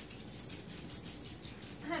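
Chihuahua puppies whimpering faintly as they play.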